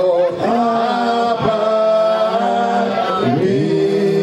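Voices singing a slow song with long held notes that glide from one pitch to the next.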